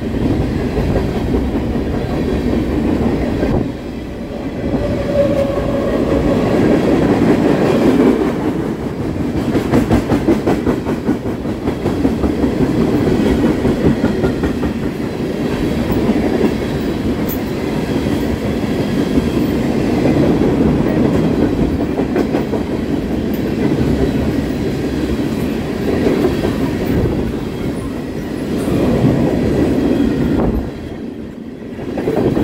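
Freight train of tank cars and covered hoppers rolling past at close range: a steady loud rumble of steel wheels on rail with a clickety-clack of wheels over the track, heaviest a third of the way through.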